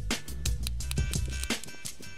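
Background music with a steady drum beat over a bass line.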